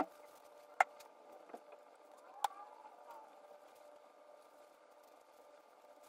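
Handling noise from hands working hair dye through hair: a few short sharp clicks about a second apart in the first half, then only a faint steady hum.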